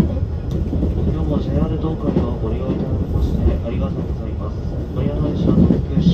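Low steady running rumble heard inside the passenger car of a moving JR Central 383-series limited express train, with indistinct passenger chatter over it.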